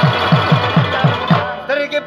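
Live Pashto folk music: a hand drum's bass strokes, each falling in pitch, about five a second over sustained harmonium tones. The drumming stops about one and a half seconds in, and short plucked notes, likely the rabab, come in near the end.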